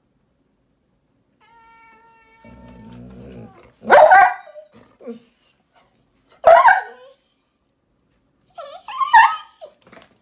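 A dog vocalizing in three short, loud cries, about two and a half seconds apart, the last one broken into several quick cries.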